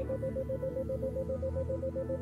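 Soft ambient synthesizer music held as a steady pad, with a 528 Hz tone pulsing on and off about seven times a second: an isochronic tone meant to bring the listener toward theta-wave relaxation.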